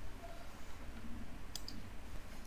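Two faint clicks close together about one and a half seconds in, from the computer used to write on the digital whiteboard, over a low steady background hum.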